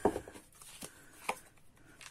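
A deck of oracle cards handled and a card drawn from it: a few light clicks and taps of card against card.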